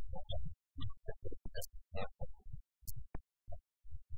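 A man's voice in badly degraded broadcast audio that keeps cutting in and out: short low-pitched fragments with silent gaps between them, so the words are not clear.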